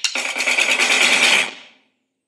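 Soundtrack percussion: struck hits that have been speeding up merge into a loud, fast drum roll, which stops about a second and a half in and quickly fades away.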